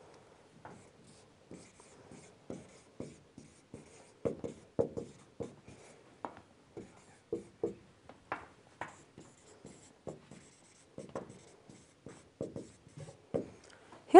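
Marker pen writing on a whiteboard: a quiet, irregular run of short strokes as words are written out.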